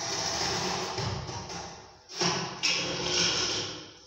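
Wooden staircase scraping and knocking against the concrete floor and the edge of the stairwell opening as it is tipped and lowered into the hole. There are two long scrapes: the first fades out after about two seconds, and the second starts with a couple of knocks soon after and runs almost to the end.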